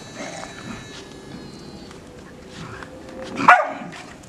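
Small dogs playing together, with one loud, sharp bark about three and a half seconds in and fainter dog noises before it.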